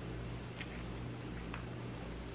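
Quiet room tone: a steady low hum with faint background hiss.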